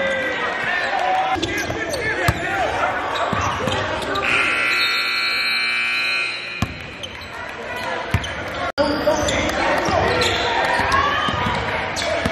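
Gym game sounds: a basketball bouncing on the hardwood, sneakers squeaking and indistinct voices in a large hall. About four seconds in, the scoreboard horn sounds steadily for a couple of seconds.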